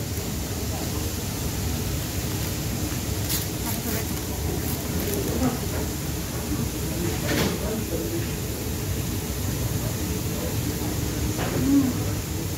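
Kebab shop ambience: a steady low rumble with indistinct background voices and a few brief clicks.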